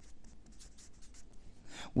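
Marker pen writing on paper: a quick run of faint, short strokes.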